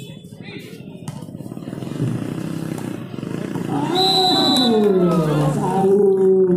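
Steady outdoor background noise, then about four seconds in a short high steady tone and a man's long, drawn-out exclamation that slides down in pitch, typical of a commentator reacting to the end of a volleyball rally.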